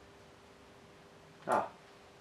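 Quiet room tone with a faint steady hum, broken by a short spoken "Ah" about one and a half seconds in.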